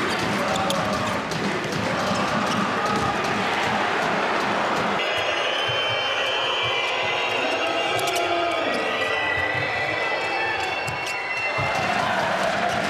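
Steady arena crowd noise with a handball bouncing on the court floor and, from about five seconds in, short high squeaks of players' shoes on the court.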